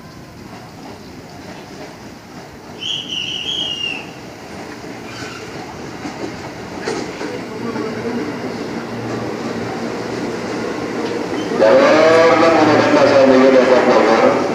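JR 205 electric commuter train pulling into the platform, its running noise building as it comes close and rolls past. A short high horn blast sounds about three seconds in, and a loud wavering pitched sound takes over for the last two seconds.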